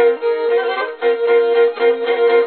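Bowed fiddle playing a fast Turkish folk tune, with quickly changing notes over a steady held lower note.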